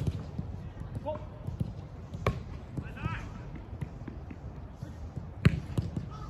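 Three sharp thuds of a football being struck, about two to three seconds apart, the last one near the end the loudest.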